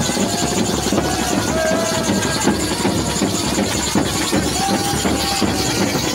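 A street band's bass drums beating a fast, unbroken rhythm, mixed with a crowd's loud shouting and cheering around them.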